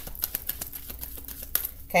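Deck of tarot cards being shuffled by hand: a quick, irregular run of light clicks as the cards strike one another.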